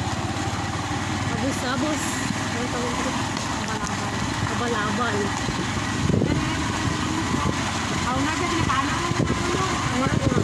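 A small engine running steadily under a moving ride, with people talking over it.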